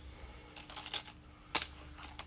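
A one-yen coin clicking against a hard surface: a light clatter, then one sharp click about one and a half seconds in.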